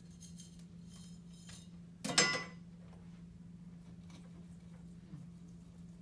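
Faint trickle of bonsai soil mix poured from a metal scoop, then one short, ringing metallic clink about two seconds in as the metal scoop strikes a hard surface. A steady low hum runs underneath.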